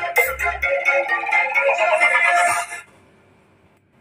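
Dance music with heavy bass played loud through a 10-inch ACR speaker driven by a homemade single-transistor amplifier, the transistor salvaged from a dead CFL lamp. A deep bass hit comes near the start, and the music cuts off suddenly about three seconds in.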